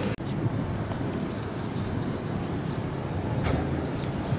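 Steady low outdoor background rumble with a few faint ticks, starting after an abrupt cut just as the sound begins.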